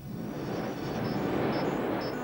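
Television ident soundtrack: a whooshing swell of noise that builds up over the first second and a half, with short high twinkling chimes repeating about twice a second, leading into music.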